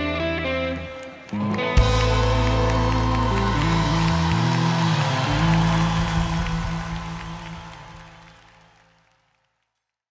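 Live rock band with electric guitars, bass, drums and keyboards playing the closing bars of a song. A loud full-band final hit comes about two seconds in, and the last chord rings on, fading out to silence near the end.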